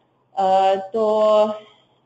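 Speech only: a woman's voice holding two drawn-out vowel sounds, "to…" among them, after a brief silence at the start.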